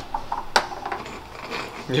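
A single sharp click about half a second in, over low, murmured voices.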